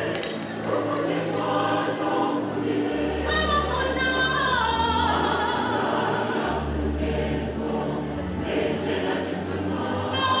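Large church choir singing a gospel song in several parts, with held chords and one voice sliding down in pitch about four seconds in.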